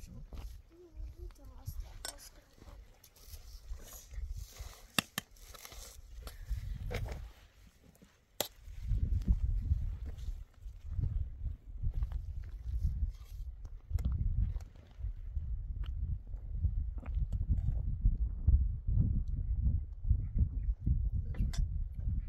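Wind buffeting the microphone in uneven gusts, heavier from a little before halfway, with scattered light clinks of a metal ladle against a cooking pot and plates as food is served.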